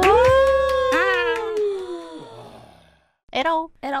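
A woman's drawn-out voiced sound that rises and then slowly sinks in pitch, with a second short syllable about a second in, over a fading low accompaniment that dies away about three seconds in. Near the end, a few short clipped voice sounds.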